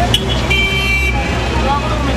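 Busy city street traffic: engines running as a steady low rumble, with a car horn honking about half a second in for roughly half a second, after a brief toot at the very start.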